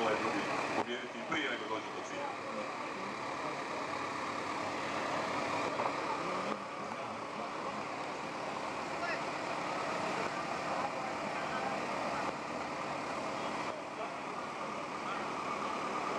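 A steady outdoor din of motorcycle engines running, with a murmur of voices over them.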